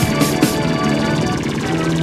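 Heavy progressive krautrock band recording playing dense sustained chords over bass and drums. The regular drum hits thin out about half a second in, leaving a thick held chord texture.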